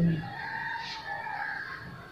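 A faint, drawn-out bird call in the background: one call lasting about a second and a half.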